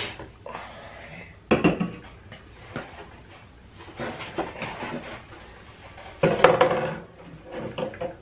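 Aluminium drink cans and shot bottles handled and set down on a wooden table, with rummaging in a cardboard box: a few scattered knocks over rustling, the loudest near the end.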